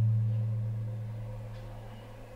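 A low, steady ringing tone fading away slowly: the dying resonance of a single heavy percussion stroke in the stage music.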